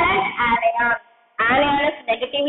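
A woman's voice speaking, with a short pause about a second in.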